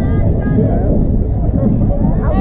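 Several voices of players and spectators chattering and calling out at once over a steady low rumble.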